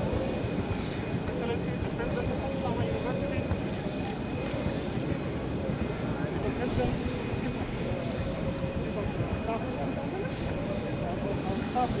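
Steady low rumble of airport apron noise, with a faint continuous whine, under indistinct voices of people talking close by.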